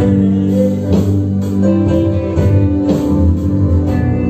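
Live band playing an instrumental passage with no singing: electric bass, guitar, keyboard and drums, with held chords over the bass and a few drum hits.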